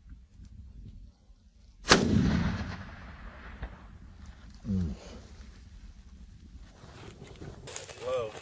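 A single rifle shot about two seconds in, the loudest sound here, followed by a long rolling echo that dies away over about a second. A short low "mm" from a person comes a few seconds later.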